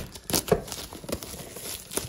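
Plastic shrink wrap being torn and crumpled off a cardboard box, in irregular crinkling crackles that are loudest about half a second in.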